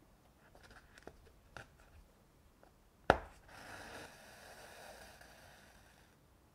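Hand embroidery needle working through a taut stretched canvas: a few faint ticks as it is pushed in, a sharp pop about three seconds in as it punches through, then the thread drawn through the canvas with a rasping hiss for a couple of seconds that fades near the end.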